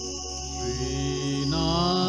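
Devotional mantra music over a steady drone, with a voice entering about one and a half seconds in to chant a held Sanskrit mantra line.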